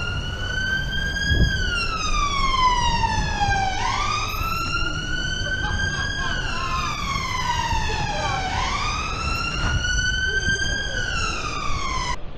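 Emergency-vehicle siren on a slow wail, rising quickly and falling slowly in pitch about every four seconds, three full cycles; it cuts off suddenly near the end. Low road and wind rumble runs beneath it.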